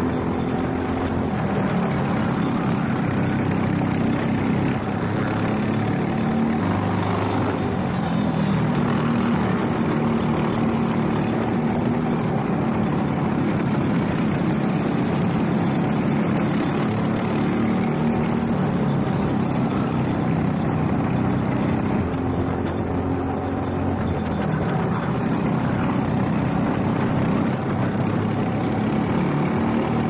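Briggs & Stratton LO206 single-cylinder four-stroke kart engine running under racing load, its pitch rising and falling with the throttle through the corners. Other karts' engines run close by, with wind rush on the onboard microphone.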